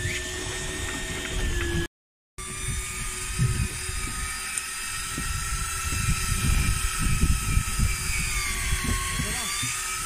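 Electric fishing reel's motor whining steadily as it winds in line against a fish on a bent rod, over rumbling wind on the microphone. The whine cuts out briefly about two seconds in and dips slightly in pitch near the end.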